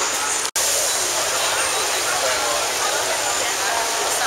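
Crowd of many people chattering at once over a steady hiss of background noise. The sound breaks off for an instant about half a second in, then picks up.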